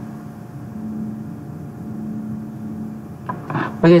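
Steady low background hum with a faint constant tone, the noise floor of the recording setup, unchanged throughout; a short spoken word comes in near the end.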